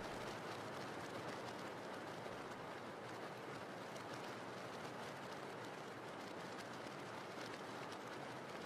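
Faint, steady rain falling, an even hiss with no separate drops or other events standing out.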